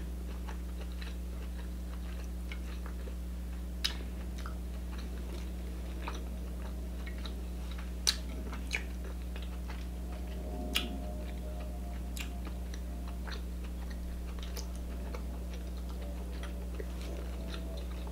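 A person chewing king crab meat dipped in butter sauce: soft chewing and mouth sounds close to the microphone, broken by a few sharp clicks, the loudest about eight seconds in, over a steady low hum.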